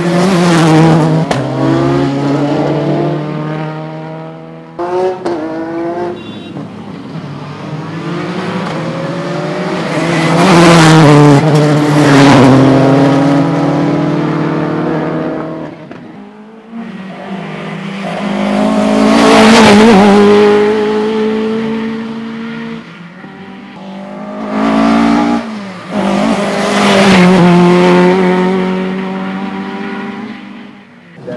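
Rally car engines at full throttle, one car after another, about five passes. Each one revs high and climbs through the gears with quick shifts, swells as the car approaches and falls away as it passes. The first is a Subaru Impreza rally car.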